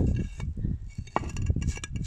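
Terracotta garden-path tile being handled and set back down, clinking a few times against the tiles beside it, with rustling handling noise.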